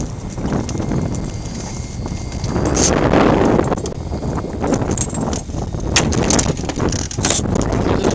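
A landing net is swung in over the side of a small boat with a rustle, then from about halfway on come irregular knocks and slaps: a small northern pike flopping in the net's mesh and against the boat as it is grabbed.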